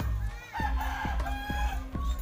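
A rooster crows once, one long call of about a second, over background music with a steady beat.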